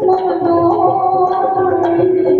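A woman singing a Sindhi kalam through a handheld microphone, drawing out long held notes that shift slightly in pitch.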